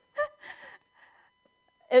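A woman's short, breathy vocal sound close to the microphone about a fifth of a second in, trailing into a softer breath, then a faint breath about a second in; a laugh-like gasp between spoken phrases.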